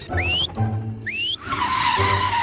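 Cartoon sound effects over children's background music: two short rising whistles, then a longer hissing whoosh starting about one and a half seconds in.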